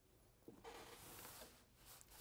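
Near silence with a faint rustle of stiff canvas fabric being slid across the sewing machine bed, starting about half a second in and lasting about a second.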